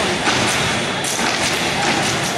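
A step team stomping in unison on a stage floor: a quick run of heavy foot stomps in the rhythm of the step routine.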